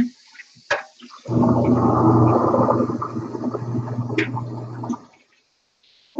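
Loud rushing water with a steady low hum under it, starting about a second in, lasting about four seconds and then cutting off suddenly.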